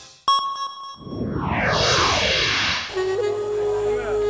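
Sound effects from a cartoon's soundtrack: a sharp bell-like ding, then a long descending whoosh of falling pitches. About three seconds in, music with a long held note begins.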